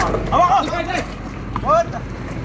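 Two short raised shouts from men on an outdoor basketball court, one about half a second in and one near the end, over a steady low background rumble.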